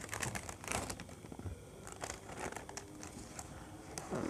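Paper liner of a cardboard cake box crinkling and rustling as it is unfolded by hand, in a run of short irregular crackles that are busiest in the first second.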